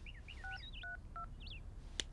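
Three short phone keypad tones, each a pair of pitches, dialled about a third of a second apart. Faint bird chirps sound behind them.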